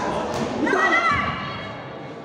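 A blow landing with a thud just after the start as the fighters exchange, then a loud, high-pitched shout from someone at the ringside lasting about half a second, echoing in a large gym hall.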